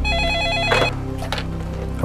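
Office desk telephone ringing with a rapid electronic two-tone warble, stopping under a second in with a short clatter as the handset is picked up.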